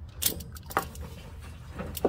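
A few light clicks and knocks from handling a red plastic gas can set under a fuel drain hose, over a steady low rumble.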